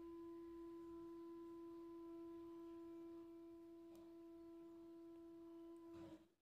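Near silence holding a faint steady tone: one held pitch with faint overtones above it, cutting off just at the end.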